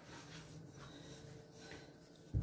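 Near silence, with only faint sounds of hands kneading sticky cookie dough in a plastic bowl.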